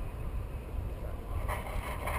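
Wind rushing over the microphone of a paraglider in flight, a steady low rumble of wind noise with a brief rise of hiss near the end.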